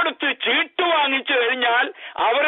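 Only speech: a man talking continuously in Malayalam, with a thin, telephone-like sound.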